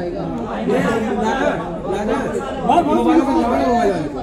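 Several men talking and calling out over one another, the chatter of photographers crowding around to take pictures.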